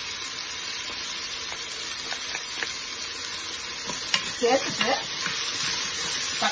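Vegetables sizzling steadily in hot oil in a steel pot, with a wooden spatula stirring and clicking against the pot now and then in the second half.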